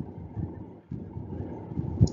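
Low, uneven rumbling background noise on the microphone, with no words.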